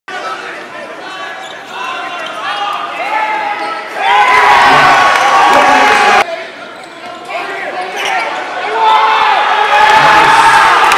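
Live basketball game sound in a large arena: the ball bouncing, sneakers squeaking on the hardwood court and players' and spectators' voices calling out. It gets suddenly louder about four seconds in, drops off abruptly about two seconds later and builds again near the end.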